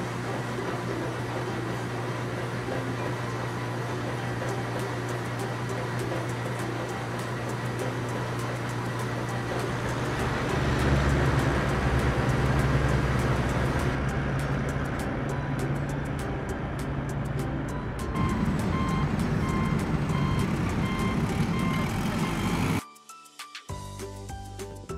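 Heavy truck engine running steadily, growing louder from about ten seconds in. From about eighteen seconds a reversing beeper sounds in regular short beeps, and both cut off suddenly just before the end.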